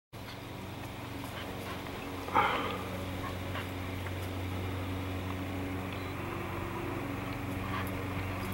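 Dog whining faintly while it stalks a squirrel up a tree, over a steady low hum. A single spoken word comes about two and a half seconds in.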